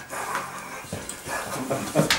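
People laughing softly in breathy, broken chuckles.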